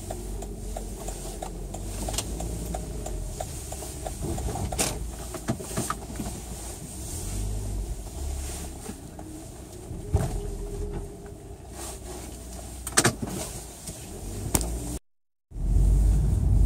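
Car driving, heard from inside the cabin: a steady low engine and road rumble with scattered clicks and knocks. The sound cuts out completely for a moment about a second before the end.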